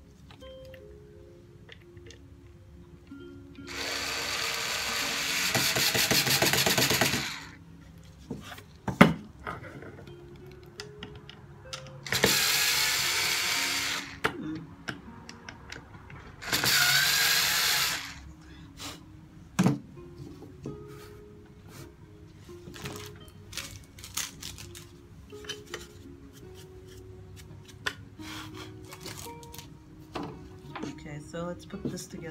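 An electric drill running in three bursts of a few seconds each, the first and longest about four seconds in, with small clicks and knocks of handling between them.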